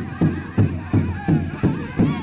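Pow wow drum struck in a steady beat, a little under three beats a second, with a group of singers' high, wavering voices over it.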